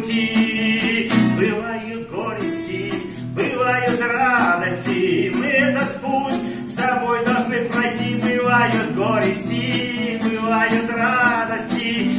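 A man sings a song in Russian while strumming an acoustic guitar, the voice carrying the melody over a steady strummed accompaniment.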